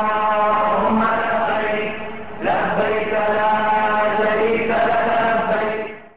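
A single voice chanting in two long, drawn-out phrases. There is a short break about two seconds in, and the second phrase fades away near the end.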